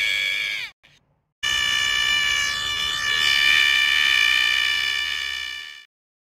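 A drawn-out high voiced "oh" breaks off. After a short silence a long, steady high-pitched tone sounds for about four seconds and then fades out.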